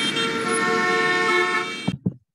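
City street traffic: car and bus engines with several vehicle horns holding long, steady notes over the rumble. The sound cuts off suddenly just before the end.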